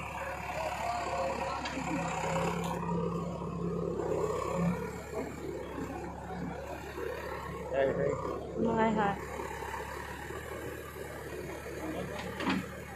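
Backhoe loader's diesel engine running steadily, with people's voices over it.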